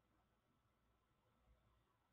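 Near silence: a pause in the audio with only a faint background hiss.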